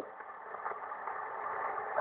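Shortwave receiver tuned to the Shannon VOLMET channel on 13.264 MHz, giving a steady, thin hiss of radio band noise with no voice on it.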